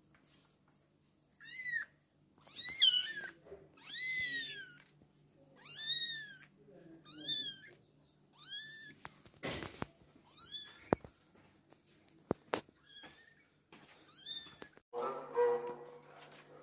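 Newborn kittens mewing: about nine high, thin cries, each rising then falling in pitch, roughly one a second. A couple of sharp clicks fall between them, and a lower call sounds near the end.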